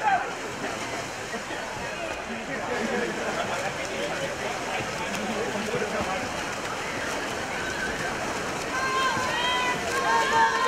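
Crowd of spectators shouting and cheering, mixed with water splashing from swimmers racing freestyle. Louder individual shouts stand out near the end.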